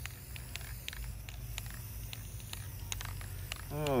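Aerosol spray-paint can with its nozzle lightly pressed, spitting paint in short irregular sputters to lay a speckled spatter, over a low steady outdoor rumble.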